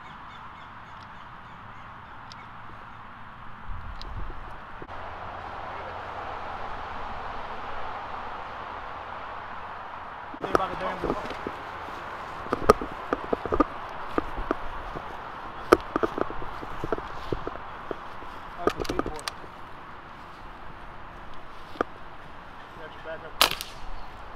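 Outdoor ambience with scattered sharp clicks and knocks, then a single sharp crack of an air rifle shot near the end.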